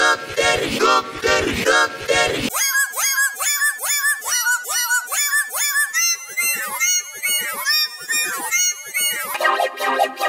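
Deepfake synthetic singing put through audio effects, its syllables repeated rapidly. About two and a half seconds in it switches to a thin, higher-pitched version, and near the end to a buzzing, organ-like chord.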